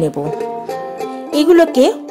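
Background music with held plucked-string notes, under a woman's Bengali narration.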